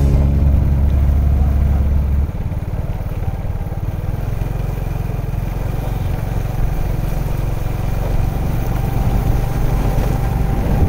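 A vehicle's engine running with road noise as it drives along a wet road. A held low tone stops about two seconds in, leaving the steady rumble of the engine and tyres.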